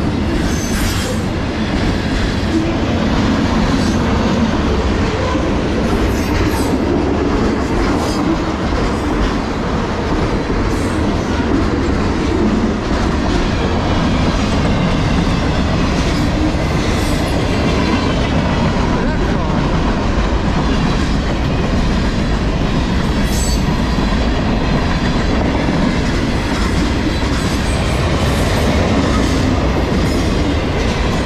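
Freight cars of a long CSX manifest train rolling past: a steady, loud rumble and clatter of steel wheels on the rails, with a few sharper clanks along the way.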